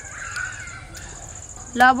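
A crow gives one short, loud caw near the end, over a steady high-pitched insect drone.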